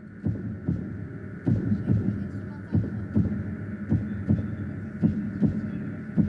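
Dramatic suspense cue played for a TV show's decision moment: a low heartbeat-like thump repeating evenly about two and a half times a second over a steady hum.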